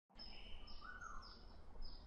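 Faint, high bird chirps repeating about twice a second over a low steady hum.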